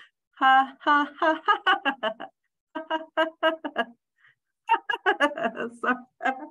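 A voice chanting short "ha" syllables in quick runs of about four a second, in three bursts with brief pauses between them. This is a laughter exercise, one "ha" for each finger raised.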